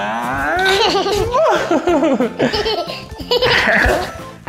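A toddler laughing and giggling in repeated high-pitched bursts with squealing rises, over background music.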